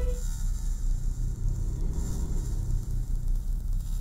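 A low, steady rumbling drone with no melody, with a faint airy hiss high up that swells twice.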